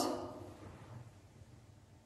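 The last of a spoken question dies away in the echo of a bare tiled room within about half a second, followed by near silence: faint room tone with a low hum.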